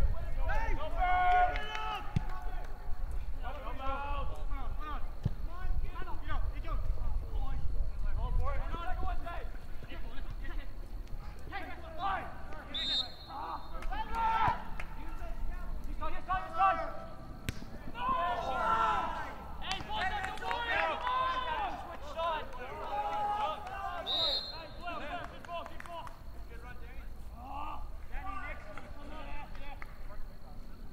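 Voices of players and spectators calling out and talking at an outdoor soccer game, the words indistinct.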